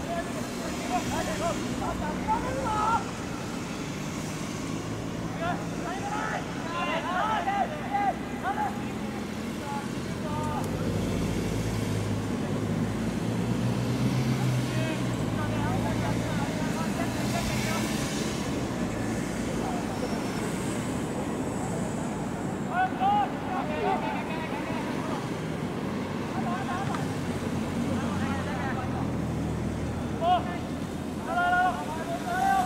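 Short shouts and calls from voices across a football pitch during open play, in a few scattered bursts. Under them runs a steady low hum that swells around the middle.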